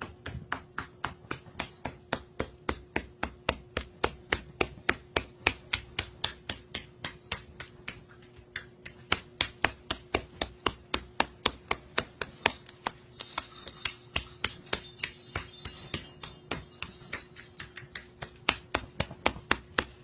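A caique parrot hopping across a wooden floor, its feet tapping in a fast, even rhythm of about four to five steps a second.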